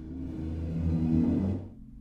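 Sampled orchestral effect from Sonokinetic's Espressivo library, played from a keyboard: a low, pitched swell that builds for about a second and then fades away quickly near the end.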